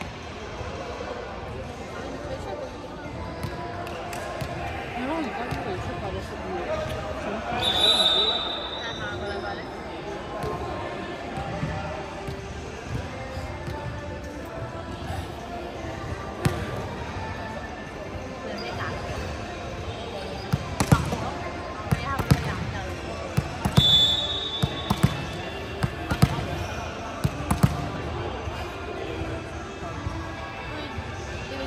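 Volleyball bounced several times on a wooden court floor, a run of sharp thuds in the last third, with a referee's whistle blown briefly twice: about eight seconds in and again during the bounces. Players' voices carry through an echoing sports hall underneath.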